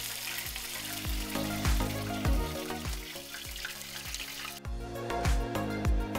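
Battered cod pieces frying in hot vegetable oil in a deep pan: a steady, dense sizzle. It cuts off suddenly about four and a half seconds in, leaving background music with a steady beat.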